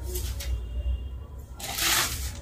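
A sheer dupatta rustling and swishing as it is shaken out and spread by hand, with a short burst near the start and a louder swish near the end. A low steady hum runs underneath.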